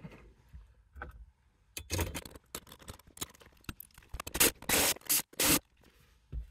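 A power driver running 7 mm screws down into the metal radio bracket of a Ford F-150 dash. It comes as four short runs of a fraction of a second each: one about two seconds in, then three close together near the end. Fainter clicks come before them as screws are set in place.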